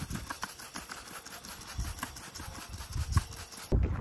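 Pressure washer jet spraying water onto a Subaru EJ25 cylinder head: a steady hiss with irregular spattering, cutting off suddenly near the end.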